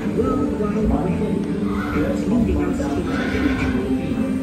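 Recorded horse whinnying with indistinct voices, part of a dark ride's scene soundtrack played through speakers.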